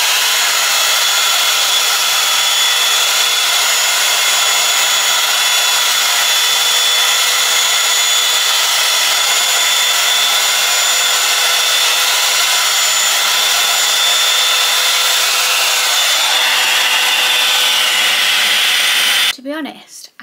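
Bondi Boost Blowout Tool, a hot-air brush, running steadily as it blows air through the hair: a loud rush of air with a thin high whine from its motor. It cuts off suddenly near the end as it is switched off.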